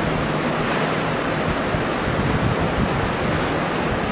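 Steady noise with no speech: classroom room tone, a strong even hiss with a faint low hum underneath.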